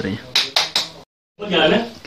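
A man's voice, then a few quick, sharp clicks in a row, then a short dead-silent gap where the recording cuts, after which voices carry on.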